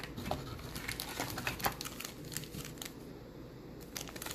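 Foil wrapper of a sealed trading-card pack crinkling as it is picked up and handled: a run of small, sharp crackles.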